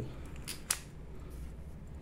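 Two light clicks about half a second in, a moment apart, from a metal baitcasting reel being handled and shifted in the hands; otherwise faint room noise.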